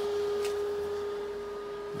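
A steady, single-pitched electrical hum held at one constant pitch.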